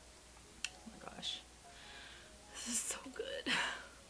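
A woman whispering and breathing, in short breathy bursts, with one short sharp click about half a second in.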